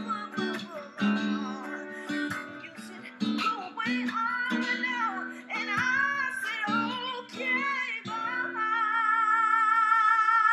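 Acoustic guitar plucked in slow R&B chords while a woman sings along. Near the end she holds one long note with vibrato over a sustained chord.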